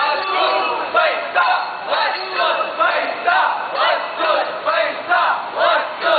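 A group of young men and women chanting a slogan together in loud, rhythmic shouts, about two a second.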